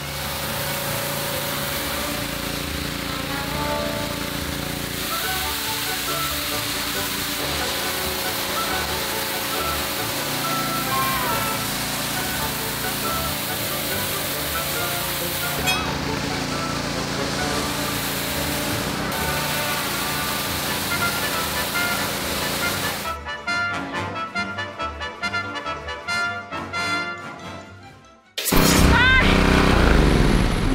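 Background music playing over the steady hiss of a pressure washer spraying a concrete driveway. About 23 seconds in the spray hiss drops away and the music carries on alone. A loud sound comes in near the end.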